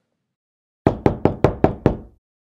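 A rapid series of about six knocks on a door, starting about a second in.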